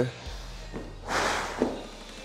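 BMX bike being pushed and mounted, its tyres rolling on a hard tiled floor with a low rumble. There are a couple of light knocks and a short rush of noise about a second in.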